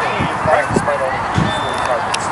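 Indistinct voices of players and spectators calling out across the field, over a steady outdoor noise.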